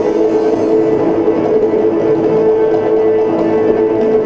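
Instrumental Caucasian folk dance music played by accordions: a steady held chord with quicker melody notes above it.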